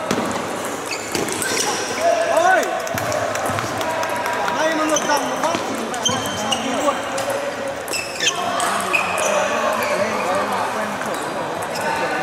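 Table tennis ball clicking off bats and the table in scattered sharp ticks, over steady chatter from many voices in a large sports hall.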